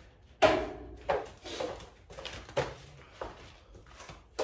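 A series of irregular knocks and rustles from someone moving about a small room, about six in four seconds, the first the loudest.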